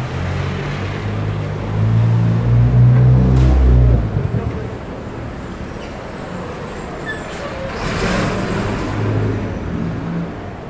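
City street traffic. A large vehicle's engine drone swells and is loudest from about two to four seconds in, then drops off sharply. A hissing swell of passing traffic comes about eight seconds in.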